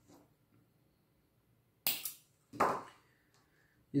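Fishing line being snipped through: a sharp, crisp snip about two seconds in, then a duller crunch about half a second later.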